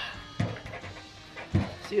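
Background music, with two short low thuds about a second apart as a thick oak slab is lifted off the sawmill bed.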